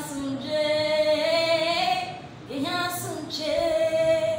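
A woman singing unaccompanied, two long phrases of held notes with a short break about halfway through.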